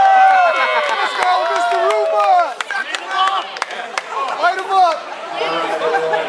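A crowd of spectators shouting, whooping and chattering over one another, with a few sharp clicks or knocks in the first half.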